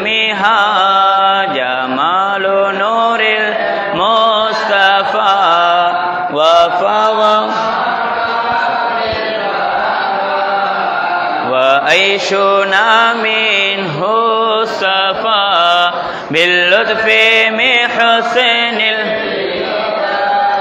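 Men chanting an Arabic mawlid, devotional verses in praise of the Prophet Muhammad, in long ornamented melodic phrases with held, gliding notes.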